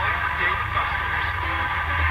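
Zenith 7S529 radio's speaker putting out a steady low hum, with faint garbled broadcast sound and whistles as the dial is tuned during alignment.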